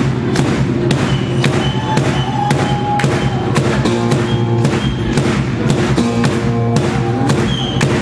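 Live band music driven by a large metal-shelled bass drum (surdo type) struck with a stick in a steady beat, about two strokes a second, over sustained guitar and bass notes.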